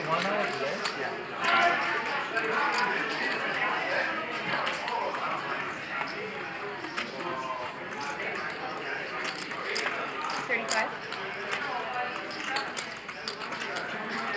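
Indistinct voices talking in the background, with poker chips clicking now and then as a player handles his stack.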